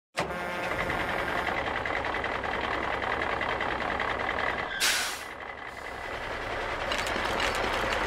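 Dump-truck sound effect: a truck engine running as it drives in, a short hiss of air brakes about five seconds in as it stops, then the engine picking up again near the end as the bed tips.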